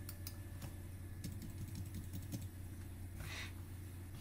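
Faint keystrokes on a computer keyboard, a scattering of soft separate clicks, as characters are deleted from a filename, over a low steady hum.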